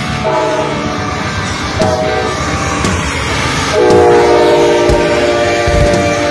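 Amtrak GE Genesis diesel locomotive sounding its multi-chime air horn as it passes: a long blast, a short one, then a louder, lower-pitched long blast about two thirds of the way in, over the rumble of the train.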